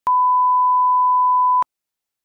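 Television colour-bar test tone: one steady, pure beep about a second and a half long, which starts and cuts off abruptly with a slight click.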